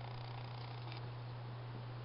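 A steady low hum with a faint even hiss underneath, with no distinct event.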